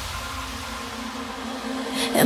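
Quiet breakdown in an electronic dance track: a held synth note over a hiss-like noise wash, swelling slightly near the end.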